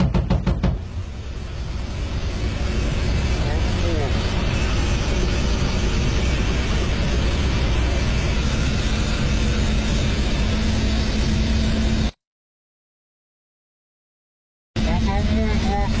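Ka-52 attack helicopter's coaxial rotors and twin turboshaft engines running, heard as a loud, steady drone inside the cockpit. A quick series of sharp bangs comes in the first second. The sound drops out completely for about two and a half seconds and returns with a voice over the noise near the end.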